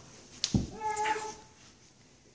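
A baby's short, high, steady-pitched squeal, with a sharp knock just before it about half a second in.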